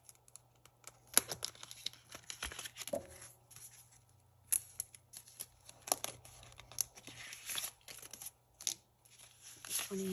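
Clear plastic cash envelopes crinkling and paper banknotes rustling as cash is handled and shuffled, with several sharp clicks scattered through it.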